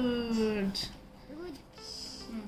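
A high voice drawn out in one long tone that falls steadily in pitch and fades out under a second in, followed by a short, quieter voice sound.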